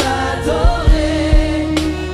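A group of women singing a French gospel worship song in harmony, with held, sliding notes over instrumental accompaniment and a steady drum beat.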